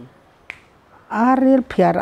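A single short, sharp click about half a second in, during a brief quiet gap, followed by speech.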